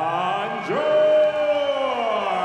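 A ring announcer's amplified voice drawing out the fighter's name: the tail of one long held word, then a second word that jumps up and is held as one long call, slowly falling in pitch, over crowd noise.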